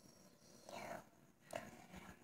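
Near silence: room tone, with a faint breathy sound a little before halfway and a soft click about three quarters of the way through.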